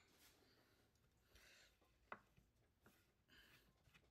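Near silence: room tone, with one faint click about halfway through.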